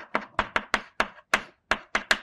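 Chalk knocking against a blackboard while writing: a quick, uneven series of sharp taps, about four a second.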